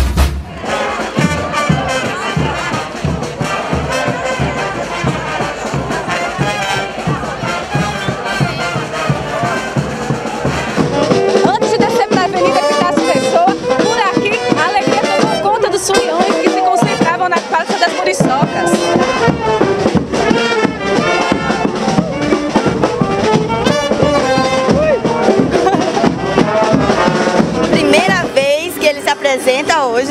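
Brass band music with trumpets and trombones over a crowd, getting louder about ten seconds in.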